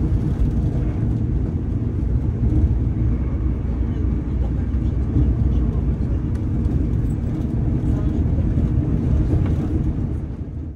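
Steady low rumble inside the passenger saloon of a Class 220 Voyager diesel-electric train running at speed: its underfloor diesel engine together with the wheels running on the rails.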